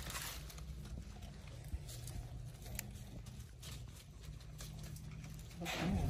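Quiet outdoor background with a low steady hum and scattered faint clicks; near the end, louder rustling of leaves and plants starts up as the camera pushes through the undergrowth.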